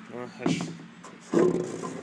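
Handling noises as a motorcycle seat is picked up and moved, with a couple of louder knocks or rubs, and brief wordless vocal sounds from a man.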